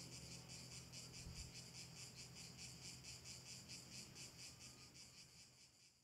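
Faint insect chirping, likely crickets, as a fast, even pulsing that fades out near the end.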